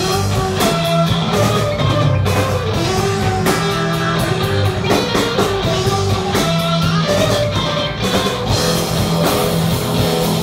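Folk metal band playing live: distorted electric guitars, violin, bass guitar and drum kit in a loud, driving rock groove.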